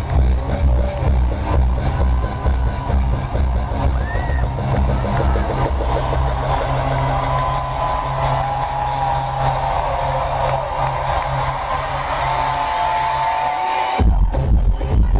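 Electro dance music from a live DJ set, played loud over a club sound system. About two seconds in the kick drum drops out for a breakdown: held synth lines over a steady bass note, with the bass falling away near the end.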